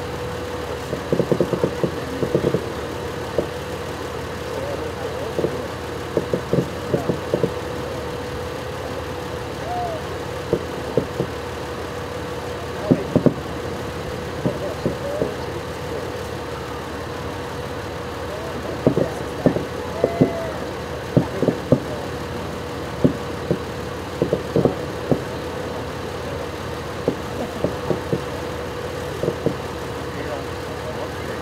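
Fireworks going off, with irregular pops and bangs that come in spells over a steady hum.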